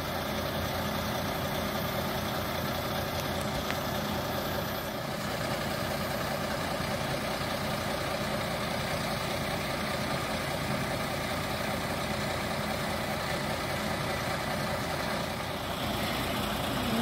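Diesel engine of a Hammar side-loader truck running steadily at idle while the container is set down.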